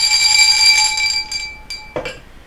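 A small hand bell rung with a shaken, jangling rattle, its clear ringing tones held and then fading away near the end.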